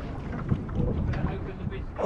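Wind buffeting the microphone over open sea, a dense low rumble with faint voices under it.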